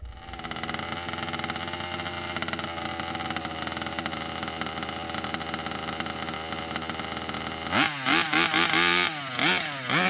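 Two-stroke petrol engine of a 1/5-scale RC buggy idling steadily, then, near the end, blipped on the throttle several times in quick succession, the revs rising and falling about twice a second.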